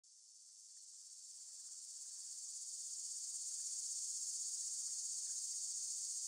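A steady, high-pitched chorus of insects such as crickets, fading in over the first few seconds.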